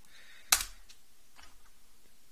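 A computer keyboard: one sharp keystroke about half a second in, the Enter key sending a typed command, then a much fainter tap about a second later.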